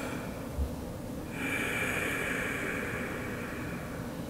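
A person's long, audible breath through the nose in a seated forward fold, an airy hiss lasting about two and a half seconds that starts about a second and a half in. A soft low thump comes just before that.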